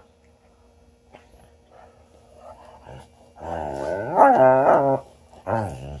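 A dog growling in play-wrestling: one long growl with wavering pitch starting about three and a half seconds in and lasting over a second, then a shorter one just before the end.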